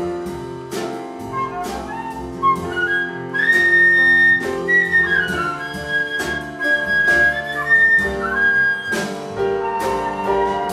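A live jazz ensemble playing: a flute carries a high melody, held and bending in pitch from about three seconds in, over repeated piano chords and an upright bass.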